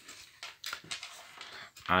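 A loose coil of thin copper wire handled by hand, giving a few faint rustles and light clicks in the first second.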